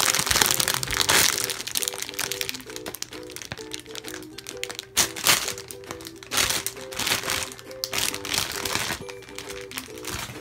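Plastic packaging bag crinkling as it is opened and handled and the squishy pulled out. The crinkling is loudest in the first second and a half, with more bursts around five and seven seconds in, over background music with a simple plinking melody.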